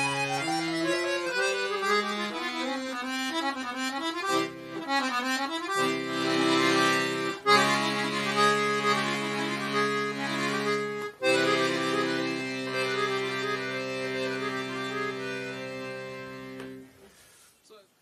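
Free bass accordion playing an Indian classical-style passage, a moving right-hand melody over low left-hand bass notes. From about six seconds in, the low notes are held as steady chords under the melody. The playing fades out about a second before the end.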